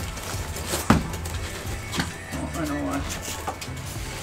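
Rigid foam insulation board being pushed into a trailer wall cavity, with one sharp knock about a second in and a lighter one a second later. Background music plays under it.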